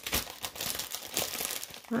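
Clear plastic zip-top bag crinkling in irregular crackles as a hand rummages in it for dried reindeer moss.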